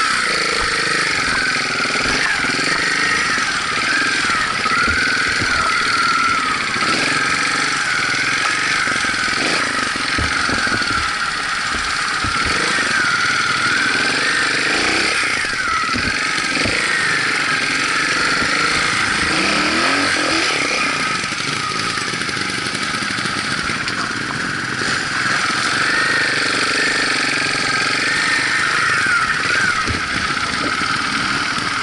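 Trials motorcycle engine running at low revs, the throttle opened and closed so the engine note keeps rising and falling as the bike is ridden slowly over rough ground, with short knocks throughout.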